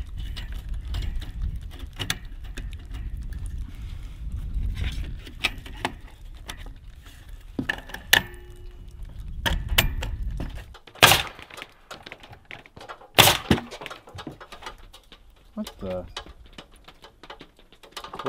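A coil of wire-collated nails being loaded into a DeWalt coil siding nailer: scattered small clicks and rattles of the nails and magazine parts, with two loud, sharp clacks about two-thirds of the way through.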